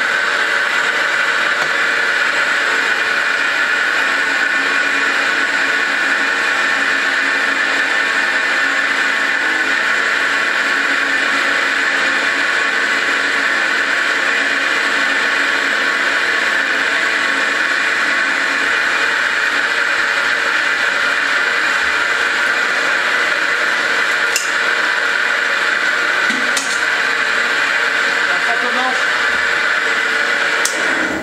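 Century-old roller mill for praliné running steadily, its motor and rollers grinding a caramelised almond mixture into paste, with a constant hum and whine. Two short clicks come near the end.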